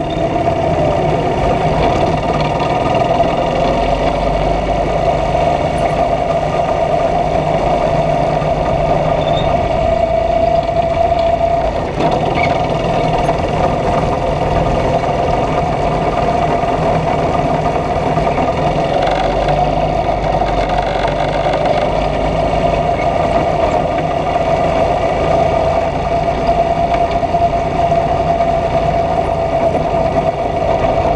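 Go-kart engine running steadily while the kart drives, heard up close from the kart itself, its pitch wavering slightly, with a brief drop in level about twelve seconds in.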